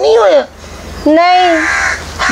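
A person's voice making two drawn-out vocal sounds without clear words, the second and longer one about a second in.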